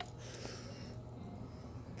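Faint steady rushing of a wood fire burning in a homemade cement rocket stove.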